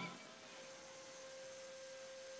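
Nearly silent: a faint hiss, with a thin steady tone coming in about half a second in and holding.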